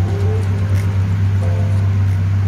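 Steady, unbroken low mechanical hum of machinery running in the dyno cell, with faint music over it.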